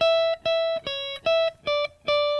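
Electric guitar playing a single-note lead line high on the neck: five short picked notes about three a second, moving between two close pitches, then a longer note ringing out at the end.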